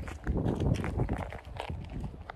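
Footsteps crunching on a dry dirt track at walking pace, with wind buffeting the microphone.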